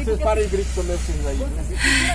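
Steady low rumble of a vehicle driving slowly over a rough dirt road, under quiet talk, with a short hiss near the end.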